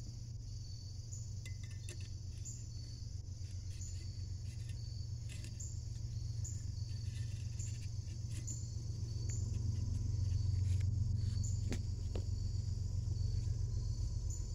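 Insects chirping steadily in a high, even rhythm of a little under two chirps a second, over a steady low rumble that swells slightly past the middle, with a few faint clicks.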